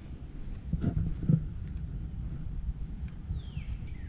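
Steady low rumble of a vehicle rolling slowly, with a bird's whistle sliding down in pitch near the end and a short high chirp about a second in.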